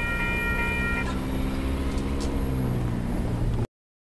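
A Union Pacific freight train going away along the rails: a train horn holds a steady chord and stops abruptly about a second in, over the train's continuous low rumble. The sound cuts off suddenly near the end.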